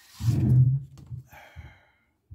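A man's breathy, voiced sigh, about half a second long, then soft rustling of the clear plastic bag as decal sheets are slid out of it.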